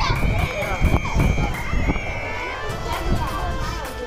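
Several voices talking over one another, with a long steady high tone that stops about two and a half seconds in, over background music with a quick ticking beat.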